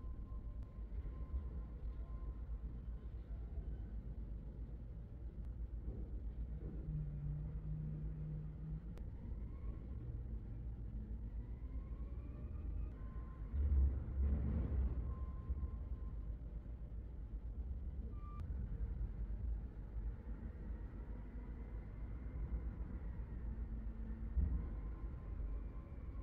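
Low, steady background rumble with faint thin tones above it, and a brief louder low bump about fourteen seconds in.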